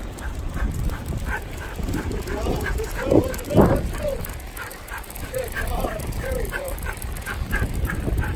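A dog running in harness gives a few short barks and yips, the loudest pair about three seconds in, over a steady low rumble of the dryland rig rolling on pavement.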